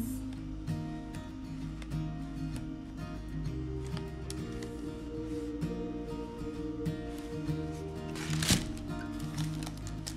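Background music with sustained, steady notes. Near the end comes a single sharp click.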